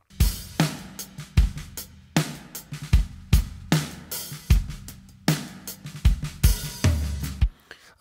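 Recorded acoustic drum kit playing back soloed in a mix, with the drum reverb switched on: kick, snare, hi-hat and cymbals in a steady groove. Playback stops near the end.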